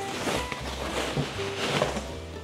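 Background music, with plastic packaging wrap crinkling and rustling as a chair is pulled out of it.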